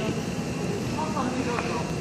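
Steady background noise with a thin high tone running through it, and a faint voice briefly about a second in.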